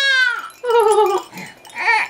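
A baby crying in long, high-pitched wails with a wavering pitch: a held cry that breaks off just after the start, a falling cry about a second in, and a short rising cry near the end.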